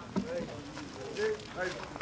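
People's voices talking, with one short knock just after the start.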